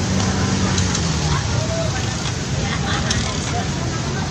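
Steady street noise from motorcycle engines running on a flooded road, with a low hum and faint voices in the background.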